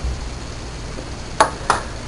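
Copper(II) acetate solution poured quietly in a thin stream into a glass test tube, with two light clinks about a second and a half in.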